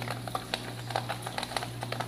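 Aquarium filter running: a steady low hum under a hiss of moving water, with scattered small clicks.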